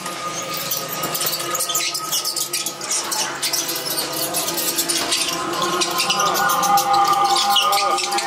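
Haunted-maze soundtrack: several steady held drone tones with fast clicking and rattling effects layered over them, and voices mixed in.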